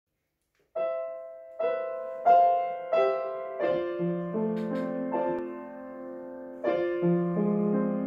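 Grand piano playing a slow passage of chords and melody notes, starting about a second in; each chord is struck and left to ring and fade.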